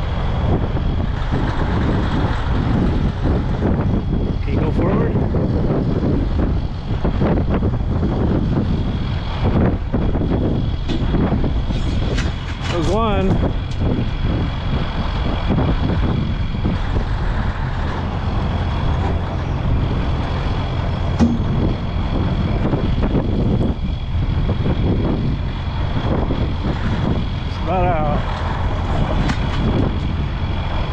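Caterpillar 988 wheel loader's diesel engine running steadily under load while it holds a CAT D9H dozer up off the ground, with a steady high whine over the rumble.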